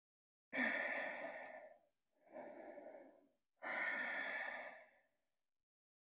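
A woman breathing deeply and audibly while holding a stretch: three long breaths of about a second each, the middle one quieter.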